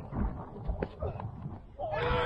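Wind rumbling on the microphone with a few short knocks in the middle, then a player's long shout starting near the end as the ball is played.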